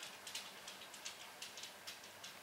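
Faint, irregular soft ticks and rustles of fingers spreading shredded cheese over a pizza crust on a metal pan.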